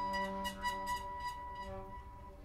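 Bowed double bass holding a steady low drone, with irregular scratchy clicks over it; the sound thins out near the end.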